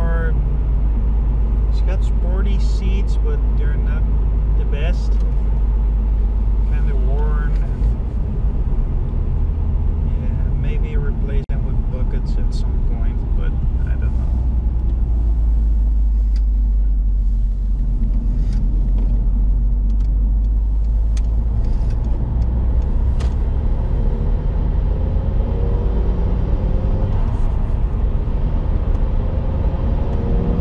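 Seat Ibiza 1.8 20V turbo four-cylinder heard from inside the cabin while driving: a steady low engine and road rumble, shifting a few times as the car changes speed. Rising and falling tones sit over it in the first half and again near the end.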